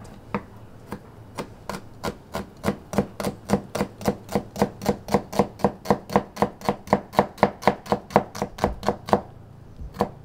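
Chef's knife slicing through a halved onion onto a wooden chopping board: a steady run of knife taps, a couple of slow ones at first, then about four a second, stopping shortly before the end. These are the parallel lengthwise cuts, root left intact, that start a brunoise fine dice.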